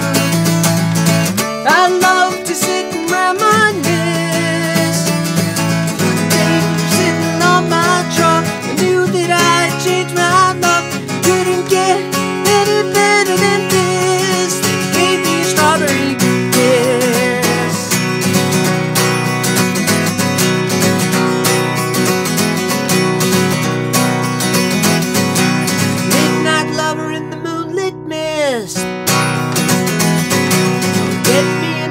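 Acoustic guitar strummed steadily, with a man singing along at times. A note glides down in pitch near the end.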